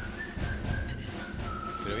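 A thin, steady high whistling tone that drops slightly in pitch about one and a half seconds in, over a low outdoor rumble.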